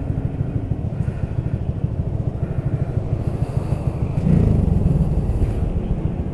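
Honda Grom's 125 cc single-cylinder engine running at low speed as the bike rolls along, a steady low rumble that gets a little louder about four seconds in.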